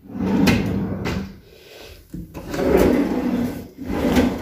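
A dresser drawer sliding open or shut twice, each run a scraping slide with sharp knocks in it.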